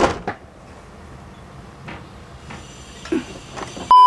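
Faint clicks and small knocks of a plastic figure blister tray being handled, with a loose plastic stand base inside it. At the very end, a loud steady test-tone beep of a colour-bar glitch transition cuts in.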